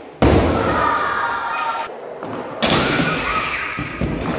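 Skateboard hitting the ramp with a heavy thud and its wheels rolling with a rumble, then a second loud thud of the board a little past halfway.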